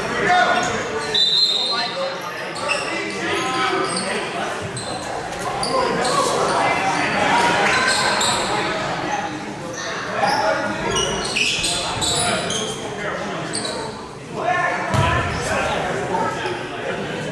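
Indoor basketball game sound in a large gymnasium: players' and spectators' voices mixed with a basketball bouncing on the hardwood court.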